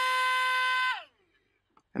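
PowerUp paper-airplane module's small electric motor and propeller running at full boost thrust with a steady whine, which winds down and stops about a second in.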